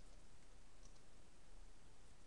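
A few faint computer-keyboard clicks from typing, over a steady low hiss and hum.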